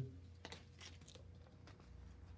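Faint rustle of thin Bible pages being turned, a few soft crinkles about half a second and a second in, over a low steady hum.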